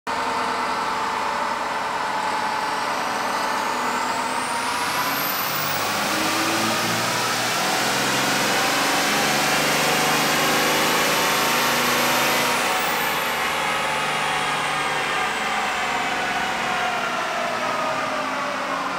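Compound-turbocharged Cummins diesel in a Dodge Ram Mega Cab making a chassis dyno pull. The engine note builds under load with a turbo whine that climbs to a very high pitch by about six seconds in, holds, then falls away from about thirteen seconds as the pull winds down.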